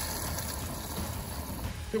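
Compressed air hissing and water spattering out of a kitchen sink sprayer as the RV's water lines are blown out with air for winterizing, slowly dying away.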